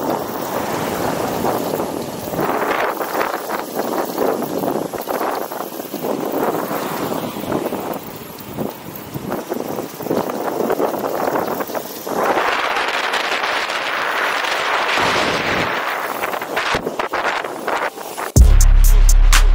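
Wind rushing over the microphone during a fast electric skateboard ride, mixed with the rolling noise of the wheels on asphalt. The rush rises and falls in gusts and is loudest about twelve to sixteen seconds in.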